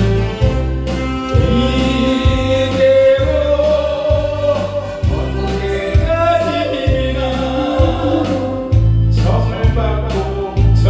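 A man singing a Korean song into a microphone over a karaoke backing track with a steady bass beat.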